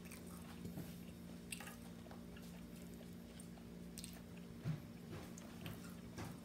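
Faint chewing with scattered soft mouth clicks and smacks, a few seconds apart, over a steady low hum.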